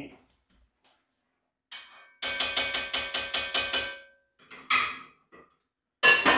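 Metal cookware struck at the stove: a quick run of about ten metal taps, roughly six a second, with a ringing tone under them, then two louder metal clanks near the end.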